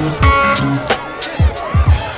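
Music soundtrack with a beat: deep kick drums that drop in pitch and sharp snare or hi-hat hits over held chords.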